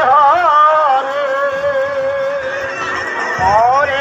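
Devotional singing with music: a wavering voice with vibrato holds one long steady note through the middle, then glides upward near the end.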